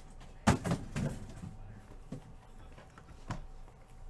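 Knocks and thuds of sealed cardboard card boxes being handled and shifted on a table: one sharp knock about half a second in, a short cluster of softer knocks right after, then two single knocks later.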